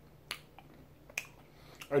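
Two short, sharp mouth clicks about a second apart from someone eating a small hard cola candy, over a quiet room. A voice starts at the very end.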